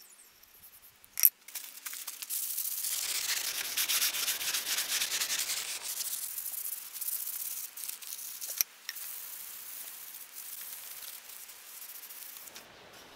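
Wooden hammer handle being rubbed down by hand with sandpaper: quick back-and-forth scratchy strokes, loudest in the first few seconds of rubbing. A sharp knock comes about a second in, before the rubbing starts.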